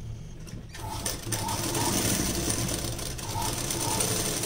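Domestic sewing machine stitching through layered blouse fabric and lining, starting up under a second in and then running steadily.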